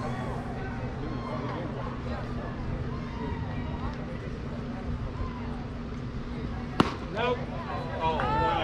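Chatter of voices around a youth baseball diamond, then one sharp pop near the end as the pitch smacks into the catcher's mitt, followed at once by voices calling out.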